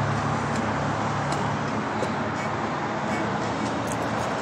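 Steady road-traffic noise with a vehicle engine running close by; its low drone eases off a little under halfway through.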